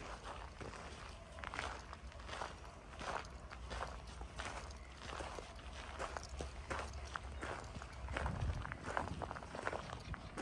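Footsteps crunching on a gravel driveway at a steady walking pace.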